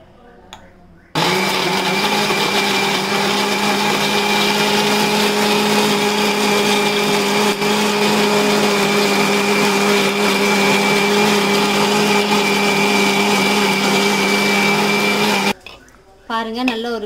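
Electric mixer grinder blending banana pieces, milk and dates in a small steel jar into a milkshake. It switches on about a second in, runs at an even, steady speed, and cuts off just before the end.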